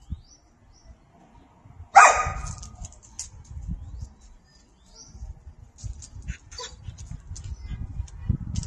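A dog barks once, loudly, about two seconds in. Faint clicks and low scuffling noises follow.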